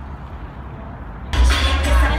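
A low, steady outdoor rumble on a phone microphone, then a sudden cut about a second and a half in to loud concert music over a PA system, heavy in bass, with the crowd in the hall.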